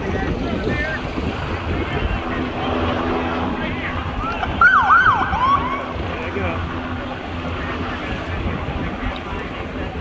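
Wind on the microphone over a low steady engine drone, with a brief emergency siren yelping in quick swoops for about a second just before the middle.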